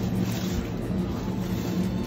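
Steady low hum of supermarket background noise, with a few constant droning tones and no sudden sounds.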